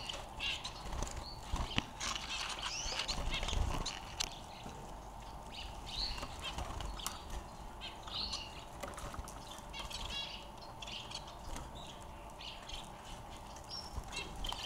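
Society finches (Bengalese finches) giving short, high chirps scattered throughout, with a quick run of notes about ten seconds in. Under them are rustling and clicks from the hay nest and wire cage being handled, heaviest in the first four seconds.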